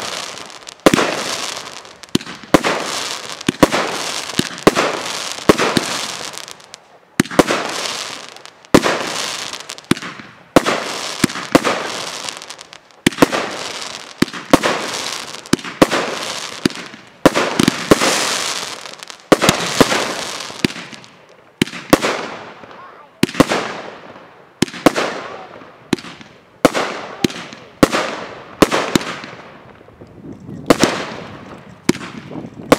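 Aerial fireworks bursting in quick succession, about one sharp bang a second, each trailing off over about a second. The bangs come faster and closer together in the last third.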